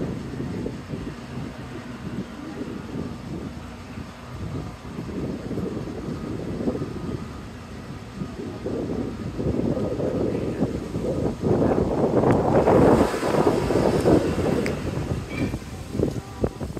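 Low, uneven rumble of wind and handling noise on a phone microphone, growing louder about ten seconds in, with a few sharp clicks near the end.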